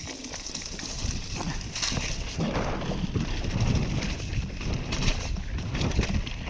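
Downhill mountain bike riding fast down a wet, muddy track: a steady rush of tyres and air with irregular knocks and rattles from the bike over rough ground, building in loudness over the first couple of seconds as it gathers speed.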